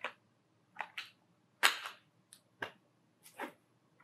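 Cardboard and paper cosmetic packaging being handled: a string of about seven brief clicks and rustles with quiet between them, the loudest a little over a second and a half in.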